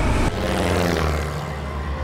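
Light crop-dusting plane's propeller engine droning steadily and low, starting just after a brief loud burst at the very beginning.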